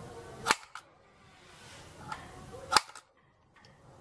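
Hands rubbing over the wood-grain surface of 15 mm MDF speaker cabinets, then two sharp knuckle knocks on the cabinet, about half a second in and near three seconds in. Each knock is followed closely by a fainter tap.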